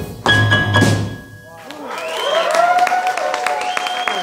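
A jazz combo of piano, upright bass and drums ends a tune with a final accented chord and drum hit that rings out and fades. About two seconds in, the audience starts applauding, with voices calling out.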